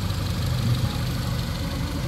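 Honda Accord's four-cylinder engine idling steadily.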